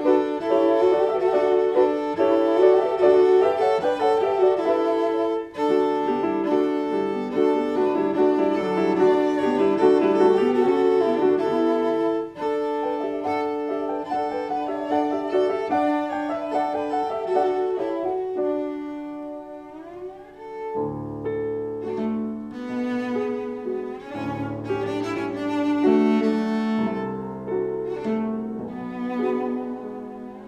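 Cello and piano playing a classical piece live. Busy, fast passages fill the first dozen seconds, then a rising slide about nineteen seconds in leads into a quieter, lower passage.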